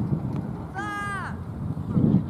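A crow gives a single harsh caw about a second in, over a low background rumble.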